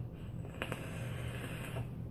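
Faint airy hiss of a person drawing on a vape for about a second, starting with a faint click about half a second in.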